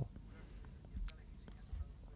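Faint speech from a voice well away from the microphone, with a couple of small clicks, over quiet studio room tone.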